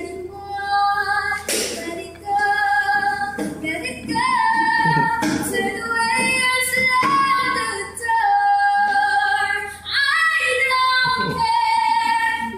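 A young female singer singing solo, holding long notes that glide from one pitch to the next.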